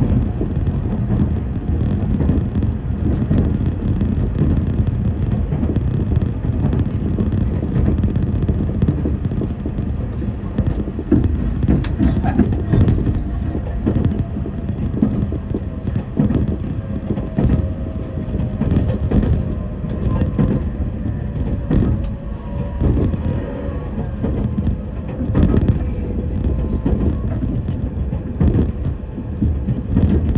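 Running noise of an electric train heard from inside the passenger car: a steady low rumble with frequent knocks of the wheels over rail joints. From about halfway through, a faint whine slowly falls in pitch.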